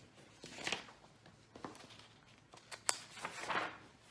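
Paper pages of a picture book being turned and handled: a few short rustling swishes and one sharp click of paper near three seconds in.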